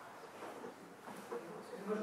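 Quiet room with a faint, distant voice starting to speak about halfway through.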